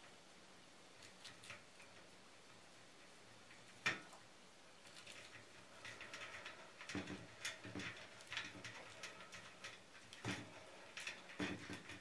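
Faint handling noise of a plastic twist-on wire connector being screwed onto stripped electrical wires: small clicks and rustles, with one sharper click about four seconds in and frequent little ticks through the second half.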